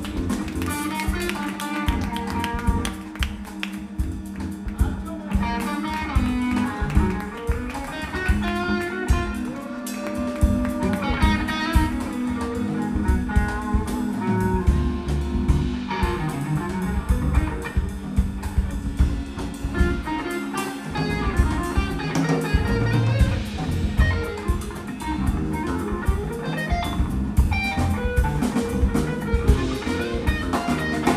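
Live instrumental band: an electric guitar plays a lead line with string bends over electric bass, keyboards and a drum kit keeping a steady beat.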